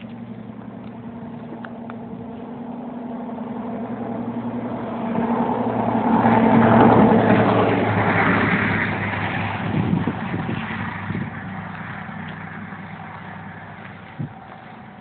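A motor vehicle's engine hum with a rush of noise, growing louder to a peak about halfway through, then fading away.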